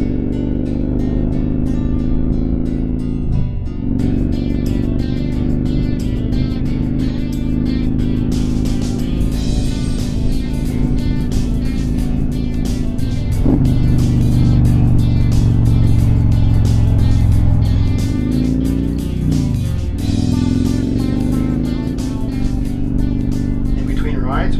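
A motorcycle engine running steadily at road speed, its pitch dipping and recovering a few times, mixed with background music that has a steady beat.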